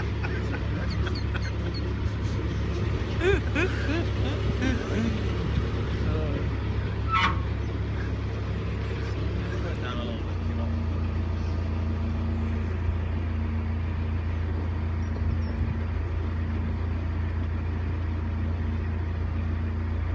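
Narrowboat's diesel engine running steadily under way, a low even drone. About halfway through, its note shifts to a different pitch.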